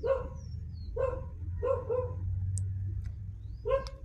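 A dog barking in the background, about five short barks spread across a few seconds, over a steady low hum.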